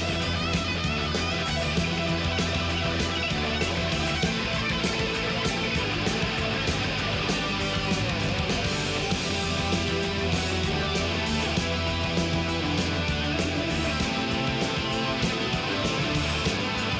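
Live rock band playing an instrumental passage with no vocals: electric guitar lines over bass guitar and a steady drum beat.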